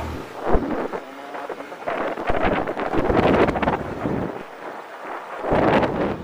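Wind buffeting the microphone of a moving motor scooter, coming in gusts that swell about two seconds in and again near the end.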